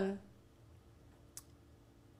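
A single short computer mouse click about a second and a half in, over quiet room tone.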